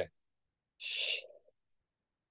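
A man's single audible breath, a short airy exhale lasting about half a second, about a second in, as he curls his spine forward in a breathing exercise.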